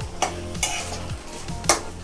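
Chicken pieces sizzling in hot oil in an iron pan while a metal spatula stirs them, scraping against the pan three times.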